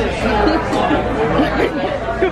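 Indistinct chatter of several voices in a restaurant dining room, over a steady low hum.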